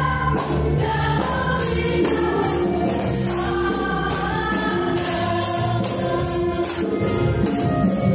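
Yamaha stage keyboard played with both hands: sustained chords and a melody line of a gospel worship song, with choir-like singing heard along with it.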